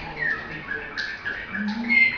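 A canary singing a string of short, clear whistled notes, several of them sliding down in pitch.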